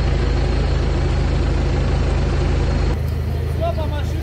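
An off-road vehicle's engine runs steadily, loud and close. About three seconds in the sound changes to a quieter engine rumble with voices over it.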